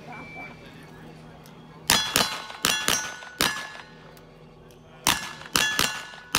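Gunshots in quick succession on a cowboy action shooting range, each followed by the ringing clang of a steel target being hit: about five shots starting some two seconds in, a pause of about a second and a half, then four more.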